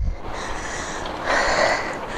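Steady wind and riding noise on the microphone of a moving bicycle, with one heavy, breathy exhale from the rider about one and a half seconds in. The rider is still panting after a steep climb.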